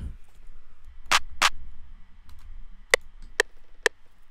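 Two hits of a drum-kit clap sample played back in FL Studio, about a third of a second apart, about a second in. Then FL Studio's metronome ticks the recording count-in at 130 BPM, three clicks about half a second apart near the end.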